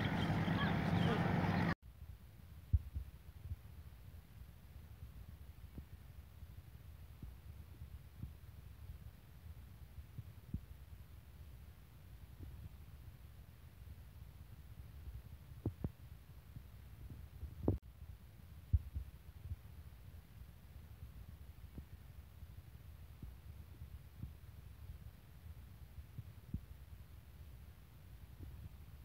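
Children's voices and shouts for about the first two seconds, cut off abruptly. Then a low, quiet rumble on the microphone with scattered soft thumps, the sound of wind buffeting it outdoors.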